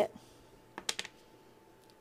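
A few sharp plastic clicks about a second in as the screw-top lid of a plastic glaze jar is twisted off.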